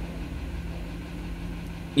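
2002 Toyota Sequoia's 4.7 L V8 (2UZ-FE) idling with a steady low hum.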